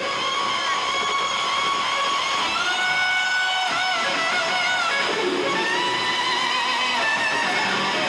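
Electric guitar solo in a live rock performance: long, high sustained notes with vibrato and pitch bends, one note held for several seconds near the end.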